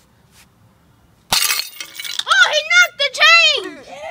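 A single hard hit on a dented metal globe piggy bank about a second in, sharp with a short clattering tail, then a loud, high-pitched wordless yell that rises and falls.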